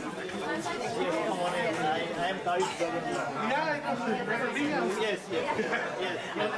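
Several people talking at once: overlapping chatter of greetings with no clear single voice.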